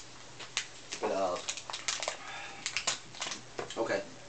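A man's wordless vocal sounds: a short sound falling in pitch about a second in and another near the end, among scattered light clicks and knocks of handling.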